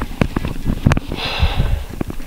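Close handling noise from a handheld camera being swung around: scattered sharp knocks and low thumps, with a short breath through the nose just over a second in.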